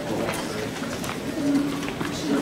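Indistinct voices in a room with scattered light clicks and knocks, and a short low voice-like tone past the halfway point.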